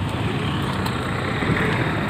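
Road traffic: motor vehicle engines running steadily in a busy street, with a low rumble that grows slightly louder near the end.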